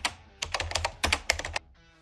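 Computer keyboard typing sound effect: a quick, irregular run of key clicks that stops shortly before the end, over a faint music bed.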